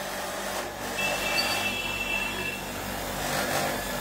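Window air conditioner running under test during refrigerant gas charging: a steady hum of compressor and fan with airflow noise.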